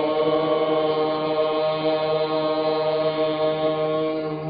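A single long chanted note held at a steady pitch over a low steady drone.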